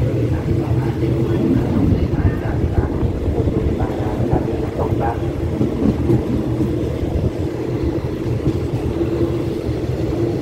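Thai railway passenger coaches rolling slowly past on the adjacent track: a steady low rumble of wheels on rail, with a steady hum underneath.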